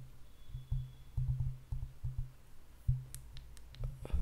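A low hum that comes and goes, with several sharp clicks in the last second.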